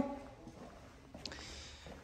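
Quiet room tone in a pause between words, with one faint, brief sound just over a second in.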